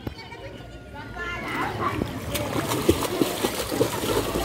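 A child kicking and paddling through a swimming pool, with choppy repeated splashing that starts about two seconds in.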